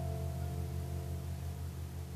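Harp guitar's last chord ringing out, its deep bass strings sustaining steadily while the higher notes die away about halfway through.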